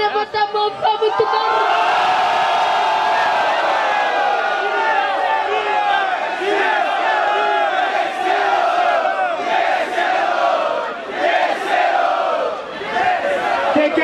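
Crowd shouting and cheering, many voices at once, loud and sustained from about a second in, with a short dip near the end: the audience voting by noise for an MC in a freestyle rap battle.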